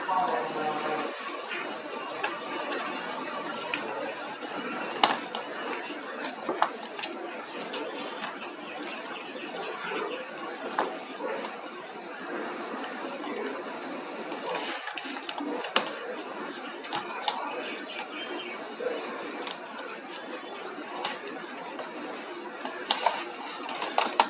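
Faint background voices, too indistinct for words, under a steady hiss, with scattered light clicks and clinks from objects being handled.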